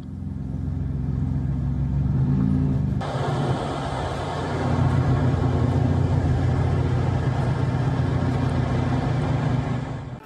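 Steady low rumble of outdoor field noise, with a broader hiss joining about three seconds in.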